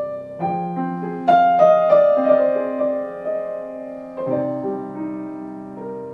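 Grand piano played solo in an improvised passage: chords and melody notes struck one after another and left to ring and fade, the loudest group about a second in and a new low chord a little past four seconds.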